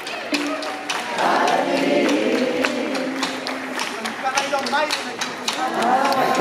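A live band playing, with several voices singing together over a steady beat of sharp percussive hits.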